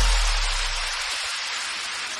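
Background music: the tail of an electronic dance track, a hiss-like noise wash and a low bass note fading out, the bass dying away about halfway through.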